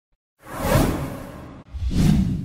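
Two whoosh sound effects from an animated intro. The first starts about half a second in, sweeps down in pitch and fades; the second swells up near the end.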